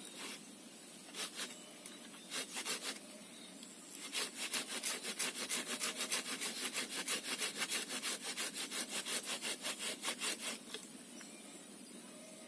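Hand saw cutting through a tree branch, likely waru (sea hibiscus). A few separate strokes come first, then from about four seconds in a steady run of quick, even back-and-forth strokes that stops about a second before the end.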